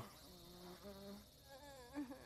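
Near silence, with faint wavering tones in the background.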